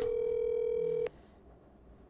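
Telephone ringback tone sounding from a smartphone's earpiece held up to a studio microphone: one steady tone that cuts off about a second in, with the call going unanswered.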